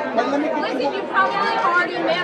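Several voices talking over one another: press photographers calling out to a posing subject, with background chatter.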